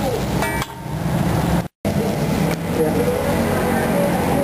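Busy street background of traffic and voices, with a metal spatula clinking against an iron wok about half a second in. The sound drops out for an instant near the middle.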